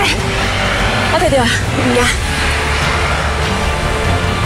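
Brief spoken dialogue over background music, with a steady low rumble underneath.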